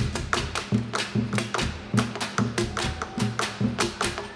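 Percussion ensemble beating sticks on plastic drums made from empty bidones (plastic containers), playing a fast, steady batucada rhythm: sharp stick clicks several times a second over low thuds about twice a second.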